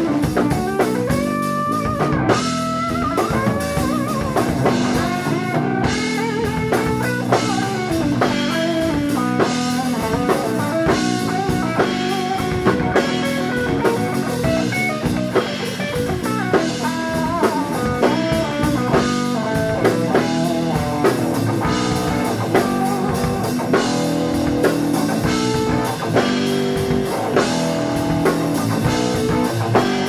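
Instrumental jazz-rock fusion played live by a trio: electric guitar lines with bent notes over electric bass guitar and a Pearl drum kit keeping a busy, steady beat.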